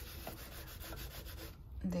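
Scouring sponge scrubbing cleaning cream on a glass-ceramic cooktop: a scratchy rubbing of pad on glass, stroke after stroke, that stops shortly before the end.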